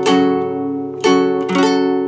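Acoustic guitar with a capo at the fourth fret strummed in a down, down, up, up, down rhythm, a minor chord ringing between several strokes.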